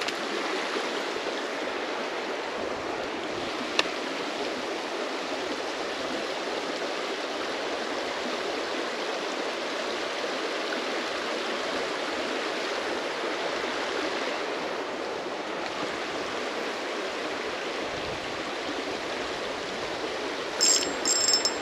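A small creek running steadily, an even, continuous rush of water. There is one brief click about four seconds in.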